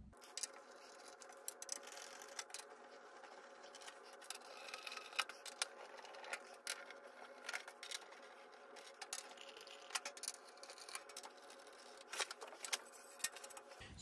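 Faint, irregular small clicks and light scrapes of a Torx T8 screwdriver turning screws out of a metal rack-mixer top plate, with the loosened steel screws being laid on the metal lid.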